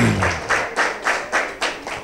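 An audience clapping: a crowd of hands applauding that dies away over about two seconds.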